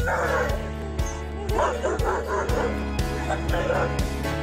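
Background music with a steady beat, over which a German Shepherd greeting its returning owner cries in high, wavering whines at the start, in the middle and again near the end.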